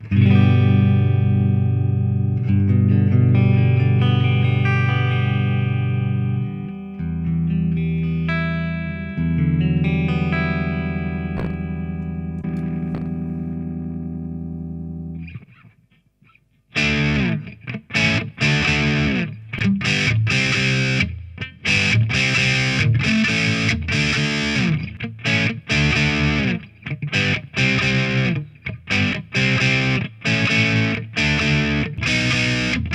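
Electric guitar through the older Blackstar HT DistX tube distortion pedal, whose ECC83 tubes have many hours of playing on them. Long, ringing distorted chords are held and changed for about fifteen seconds. After a short break comes a fast, choppy chugging riff.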